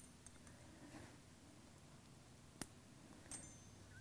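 Near silence: room tone, with one sharp faint click a little past halfway and a softer one near the end.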